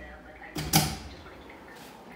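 A barred metal security gate being opened, with one short creak and rattle just under a second in.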